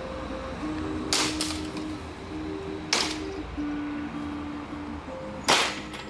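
Three sharp chopping strikes of a steel sword blade into a wooden mop-pole shaft clamped upright; the last blow cuts the shaft through. Background music plays under the strikes.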